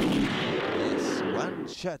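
A sudden loud explosion-like blast that dies away over about a second and a half, with a man's voice starting near the end.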